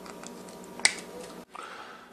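One sharp snip as small side cutters clip a leftover panel tab off the edge of a bare circuit board, with a few faint ticks just before it.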